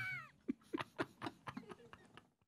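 A man laughing hard: a high, drawn-out squeal of a laugh that falls in pitch and dies away, followed by a run of short, quiet, breathy laugh pulses.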